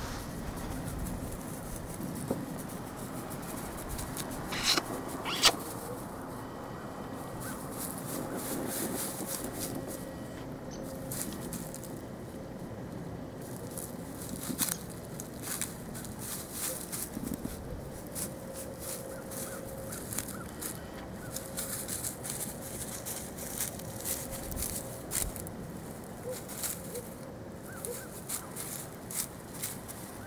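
Rustling and crackling in dry grass and leaves, many short irregular clicks over a faint steady hum, with two sharper clicks about five seconds in.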